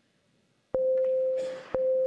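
Snooker shot-clock warning beeps: two loud, steady, mid-pitched electronic tones starting a second apart, counting down the last seconds before the shot must be played.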